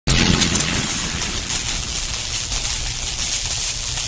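Steady rushing noise with a pulsing low rumble and strong hiss.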